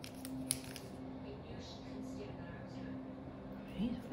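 A few light clicks and taps in the first second, the sharpest about half a second in, from a small tool and rhinestones being handled against a long acrylic nail, over a faint low hum.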